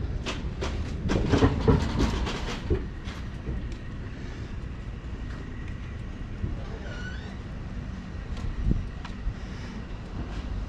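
A rapid, irregular run of clattering knocks in the first few seconds over a steady low rumble, with a few isolated knocks later.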